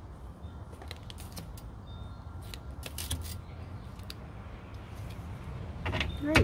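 A deck of tarot cards being shuffled by hand: irregular soft clicks and snaps of card edges, a little busier about halfway through, over a low steady background rumble.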